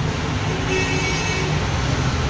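Steady low rumble of road traffic, with a short high-pitched vehicle horn toot lasting under a second, starting a little under a second in.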